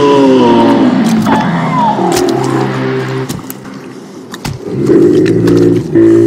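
Low, drawn-out calls of a Diprotodon, the giant extinct marsupial, as sound-designed for the animation. The first call falls in pitch, then steadier calls come about two seconds in and again near the end, with short clicks and snuffles between them.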